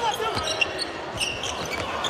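Arena crowd noise with a basketball bouncing on the hardwood court, a few short sharp strikes over a steady crowd haze.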